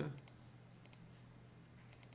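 A few faint, scattered computer keyboard and mouse clicks over a low steady hum.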